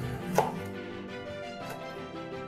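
Chef's knife chopping soft roasted chile peppers on a wooden cutting board: one sharp chop about half a second in and a fainter one near the end, over background music.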